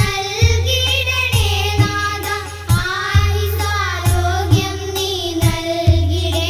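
Malayalam devotional film song: voices singing a melody over a steady low drone, with percussion beats about once or twice a second.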